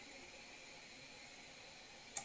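Near silence: a faint steady hiss of room tone.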